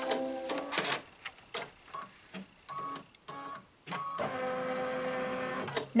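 Brother Luminaire embroidery machine running a stitch-out: irregular stitch clicks and short motor whines as the hoop carriage steps about. Near the end comes a steady motor tone for about a second and a half as the hoop travels to a new position, and then the machine stops at the end of the step.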